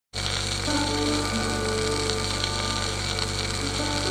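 Hindustani classical instrumental on a c.1945 78 rpm shellac disc, the melody played by violin with piano, beginning under a second in with long held notes. Heavy record surface crackle and hiss run throughout, over a steady low hum.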